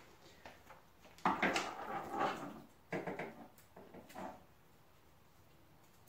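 A few short bursts of rustling and scraping as craft materials are handled and moved about on a countertop.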